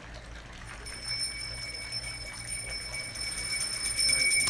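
A temple hand bell rung rapidly and without pause, its high ringing starting about a second in and growing louder.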